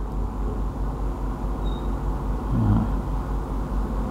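Steady background hiss with a low electrical-sounding hum. About two and a half seconds in, a brief short voice sound like a murmured 'uh' breaks in.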